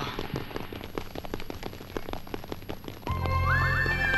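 A rapid, irregular pattering of short clicks for about three seconds, then the film's background score comes in loudly about three seconds in: held synthesizer tones over a low drone, with a note stepping upward.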